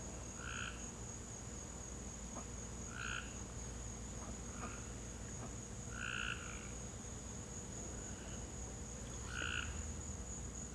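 A frog calling in short croaks, four in all at about three-second intervals, over a steady high-pitched insect drone.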